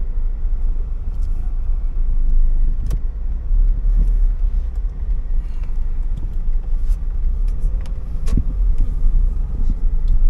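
Car driving, a steady low rumble of engine and tyres heard from inside the cabin, with a few sharp clicks or knocks, the clearest about three seconds in and a little after eight seconds.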